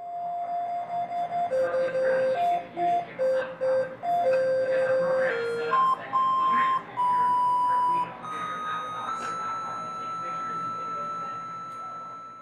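A melody of plain electronic beep-like tones from a loudspeaker set in a saxophone's bell, played note by note, with faint clicks from the servo motors pressing the saxophone's keys. Short notes give way to longer ones, and the tune ends on a high note held for about three seconds.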